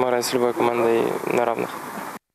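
A man's voice speaking, with long vowels held at a fairly level pitch.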